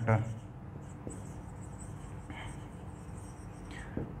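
Marker pen scratching on a whiteboard as a word is written, faint and in short strokes.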